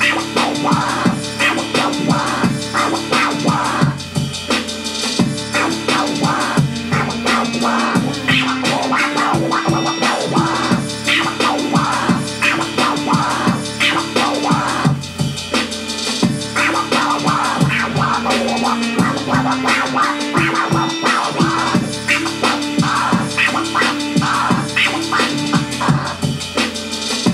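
Vinyl record scratched by hand on an Audio-Technica AT-LP1240-USB XP turntable through a DJ mixer, cut over a looped hip-hop beat played from an Akai MPC.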